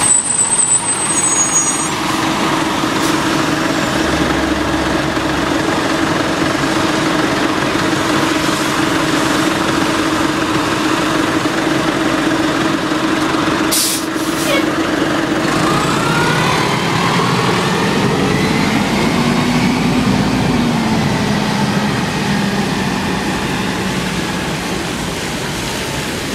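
NovaBus RTS transit bus's diesel engine running close by with a steady drone. About 14 seconds in there is a short burst of air-brake hiss, then the engine and transmission note rises and falls as the bus pulls away over wet-road traffic noise.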